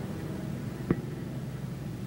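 A single sharp smack of a strike landing on a padded striking shield about a second in, over a steady low hum and hiss from an old recording.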